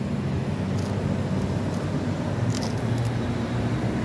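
Street traffic: a steady low engine hum from nearby road vehicles, with a couple of faint brief hisses.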